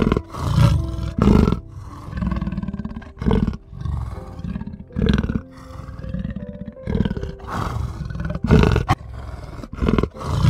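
Lion roaring in a series of deep, grunting calls, about one a second, over soft background music.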